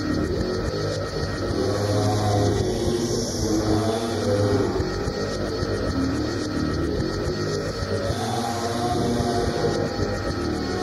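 Experimental electronic music from a 1990 EBM cassette: a dense, noisy, continuous texture with a strong low hum between about one and a half and four and a half seconds in.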